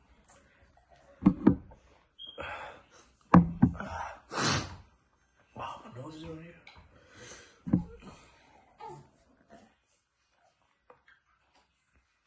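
A man gasping, breathing hard and groaning in short bursts with no words, from the burn of a superhot Dragon's Breath chilli; the sounds trail off over the last couple of seconds.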